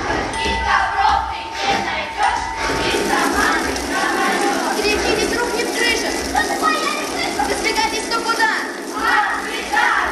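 Many children's voices shouting and calling out together over music, a loud jumbled clamour with no single voice standing out.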